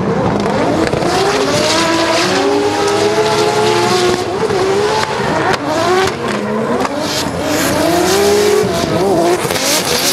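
A turbocharged BMW M3 E46 and a second drift car sliding in tandem. Their engines rev up and down in repeated throttle blips over the hiss and squeal of spinning tyres.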